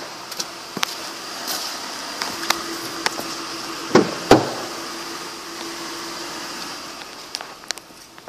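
Steady hum inside a car cabin, with scattered small clicks and two heavy thumps close together about four seconds in.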